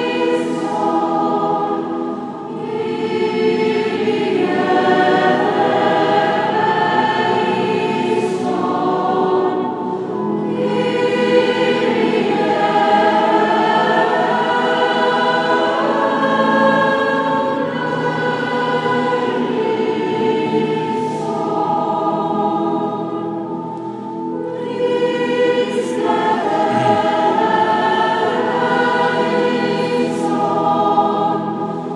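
Church choir singing a liturgical hymn in long sustained phrases, each broken off by a short breath pause.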